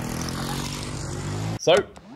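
Small motorcycle engines running steadily at road speed, cutting off suddenly about a second and a half in.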